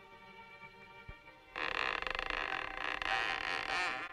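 A wooden door creaking open in one long creak of about two seconds, starting about a second and a half in and stopping abruptly, over faint background music.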